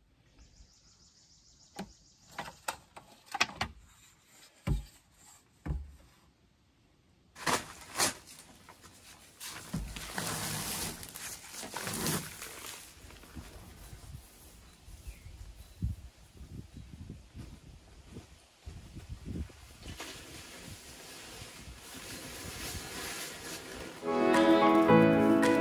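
Hand work on concrete footings: a few sharp knocks and scrapes of a shovel in gravelly soil. About seven seconds in, the sound turns louder and busier, with rustling, footsteps and scattered thuds as a paper bag of concrete mix is carried and handled.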